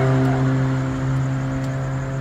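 Steady low hum of an idling vehicle engine, holding one even pitch, with a few faint clicks.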